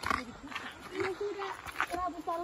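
A person's voice briefly speaking or calling, untranscribed and at a lower level than the vlogger's narration, with a few short knocks between.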